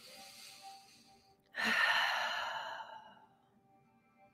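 A woman draws a faint breath, then lets out a long audible sigh about a second and a half in that trails away, with soft background music underneath.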